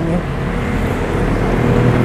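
Steady machine hum with a low, even drone and a noisy background, running without change.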